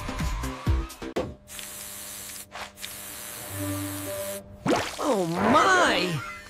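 Cartoon soundtrack of background music and sound effects: a busy first second with low thumps, a quieter stretch, then a loud warbling sound that slides up and down in pitch near the end.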